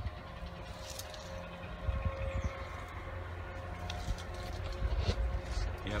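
Steady low outdoor rumble with a faint constant hum, and a few light knocks from the handheld phone being moved.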